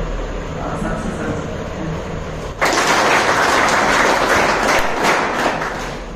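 An audience applauding, breaking out suddenly about two and a half seconds in and going on at a steady level.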